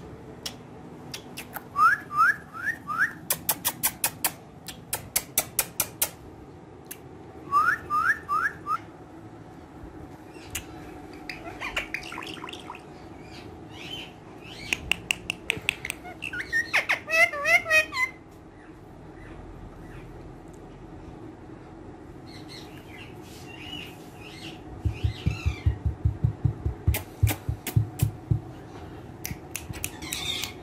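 Indian ringneck parakeet calling: quick runs of four short rising chirps, then squawks and chatter, mixed with many sharp clicks. Near the end comes a rapid run of low thumps.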